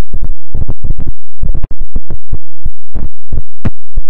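Heavily distorted, clipped electronic audio from a meme effects edit: a rapid, irregular stutter of sharp bass-heavy bursts, about six a second, over a faint steady hum.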